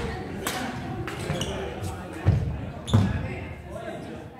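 Badminton rackets smacking shuttlecocks in several sharp hits, with heavy low thuds of players' feet landing on the wooden court floor, the loudest a little after two seconds and at three seconds. The sounds echo in a large sports hall, over voices chattering in the background.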